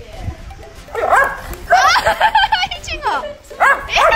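A Doberman barking and yipping excitedly in quick runs. One run starts about a second in, a long fast string of short yips follows through the middle, and another run comes near the end.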